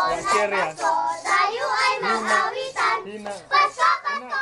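A group of young children singing a Christmas carol together, in short phrases.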